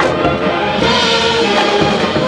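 High school marching band playing its field show: the full ensemble comes in together and holds sustained chords.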